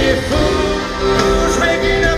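Live country band playing a song through a big outdoor PA, heard from the audience, with a sung melody line over guitars.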